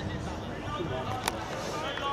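Indistinct shouts and calls from rugby players across a floodlit pitch, over a low steady rumble, with one sharp knock a little past halfway.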